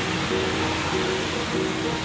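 Background music, a simple melody of short notes, over a steady hiss of rain on the street.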